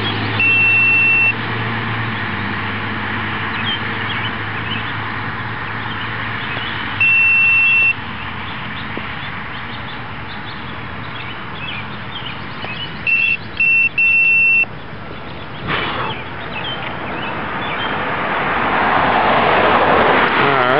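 Handheld laser speed gun (Kustom ProLite) beeping over steady outdoor road noise: one high tone about a second long near the start, another about seven seconds in, and three short beeps about thirteen to fourteen seconds in. A single knock comes about sixteen seconds in, and a rush of noise swells near the end.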